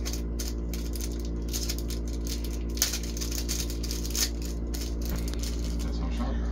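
A small plastic packaging bag being opened and handled by hand, crinkling and rustling with many light clicks and rattles from the small item inside, two sharper clicks about three and four seconds in. A steady low hum runs underneath.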